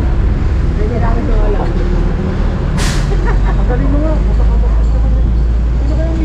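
Street noise: a steady low rumble under voices talking, with one short, sharp hiss about three seconds in.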